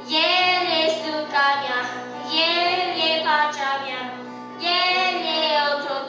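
A boy singing a church song into a microphone, over electronic keyboard accompaniment, in sung phrases of one to two seconds with short breaths between them.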